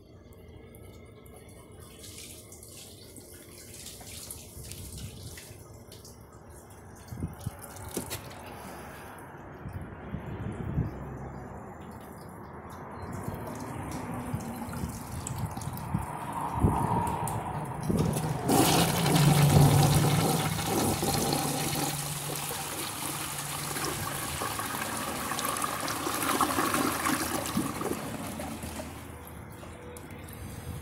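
1987 American Standard Plebe toilet flushing a bowl full of dirt. After quieter handling sounds, the flush starts suddenly a little past halfway with a rush of water that is loudest in its first couple of seconds, then runs on steadily before easing near the end. The flush clears the dirt, leaving only a little behind.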